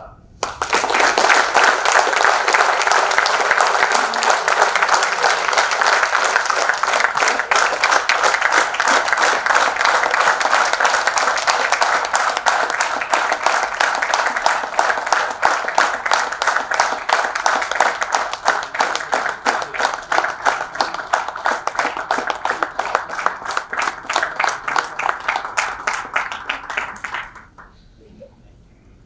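Audience applauding loudly, starting about half a second in and running on for nearly half a minute. Single claps stand out more toward the end, and the applause then stops fairly abruptly.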